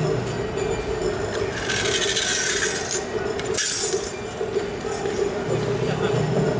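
Metal rings of a tekomai's iron staff (kanabō) jangling as it is carried and struck on the road, with a longer jingling run about two seconds in and a short one a second later, over a steady hum.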